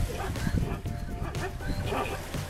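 A herd of plains zebras milling on dry ground, with scattered short calls and hoof steps over faint background music.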